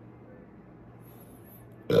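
Quiet room tone, then a man's loud burp right at the end.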